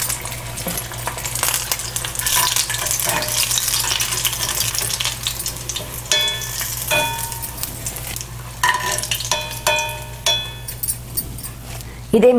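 Battered tilapia pieces deep-frying in hot oil in a cast-iron skillet: a steady, dense crackling sizzle. In the second half a metal spoon clinks against the pan several times as the fried pieces are lifted out.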